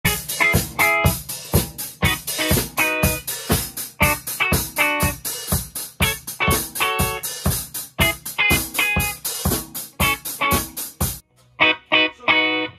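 A Pearl drum kit and an amplified electric guitar playing together in a steady beat of about two drum and cymbal hits a second. Both stop suddenly near the end, leaving a few guitar notes on their own.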